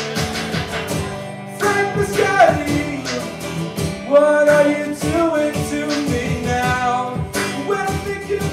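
Live acoustic guitar strumming under a man singing improvised lines, with beats tapped on a Roland HandSonic electronic hand-percussion pad.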